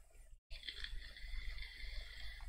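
Low steady hum and faint hiss of a live-stream microphone's background noise, cutting out briefly just before halfway and coming back, as a noise gate closes and opens.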